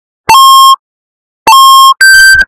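Two loud electronic beeps of the same pitch, each about half a second long and a little over a second apart: a low-battery warning sound effect.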